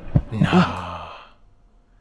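A man's long breathy sigh that trails off within about a second.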